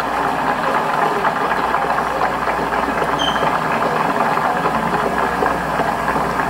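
Recorded crowd applause and cheering from the 1963 "I Have a Dream" speech, played back through a TV's speakers in a large room, steady throughout.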